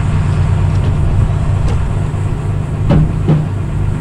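An engine running steadily, a low even drone. About three seconds in come two short knocks as the new injection pump is handled and lifted out of its cardboard box.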